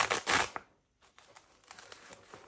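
A fabric pencil case is handled and pulled off a cloth art-supply roll. There is a loud rustle of fabric in the first half second, then it goes almost quiet, with a few faint handling taps.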